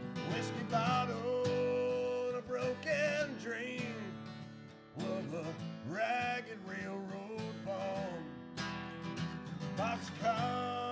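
Steel-string acoustic guitar strummed in a country-folk song, with a man's voice singing over it in two phrases. The playing thins out briefly about halfway through, then the strumming and singing resume.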